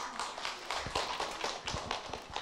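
Audience applauding: many hands clapping in a dense patter.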